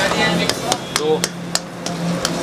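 Cooking utensils knocking sharply in a street kitchen, several uneven strikes a second, over a steady low hum.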